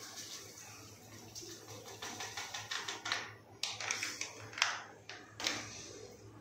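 Drain-cleaner granules poured into the standing water of a blocked bathroom floor trap, giving a run of quick faint ticks and crackles as they begin to react and foam, then a few sharper clicks in the second half.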